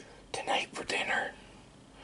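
A man whispering a few words, lasting about a second.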